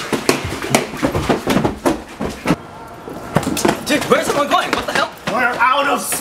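A quick, irregular run of knocks and thumps for about two and a half seconds, then a person's voice making sounds without clear words.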